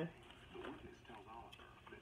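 A deck of tarot cards being shuffled overhand by hand, with soft, faint card-on-card rustling and a few light ticks, and a faint murmur of voice about half a second in.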